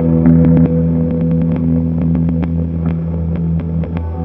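Electric guitar played through a Hologram Infinite Jets and other effects pedals: a loud sustained low drone with several held notes layered above it, flecked with many short ticks.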